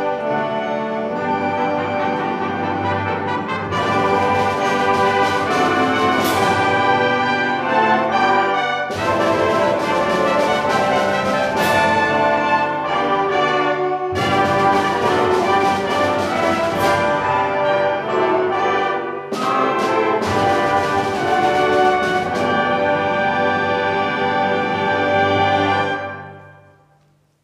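High school band playing, led by the brass, in long held chords and phrases several seconds apart. The music stops at the very end.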